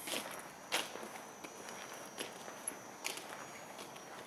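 Footsteps on asphalt pavement: irregular scuffing steps, roughly one a second.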